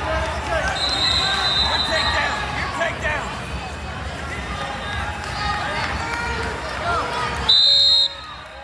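Voices from coaches and spectators shouting in a large hall during a wrestling bout, with a held whistle tone about a second in. In the last half second comes a loud, sharp whistle blast, the referee stopping the action.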